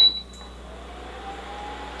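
A portable electric cooktop's control panel gives one short high beep as it is switched on and set to medium. A faint, slowly rising hum follows.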